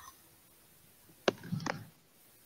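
Quiet room tone, then just over a second in a sharp click and a brief, soft sound from a person's voice or mouth, too short to be a word.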